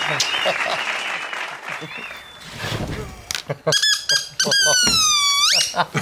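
Applause dying away over the first couple of seconds. Then come short squeaks and a long high-pitched squeal that slides slowly down in pitch and sweeps sharply up just before the end.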